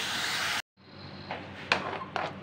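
Cold milk poured into hot ghee and roasted moong dal in a steel kadhai, a loud sizzle that cuts off suddenly about half a second in. After that, quieter stirring of the thick halwa mixture, with a few scrapes and knocks of a steel spoon against the pan.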